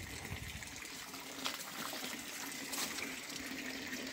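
Faint, steady outdoor background noise, an even rushing hiss with no distinct events.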